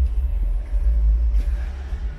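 Loud, uneven low rumble on the camera's microphone as the camera is carried along, with little above it.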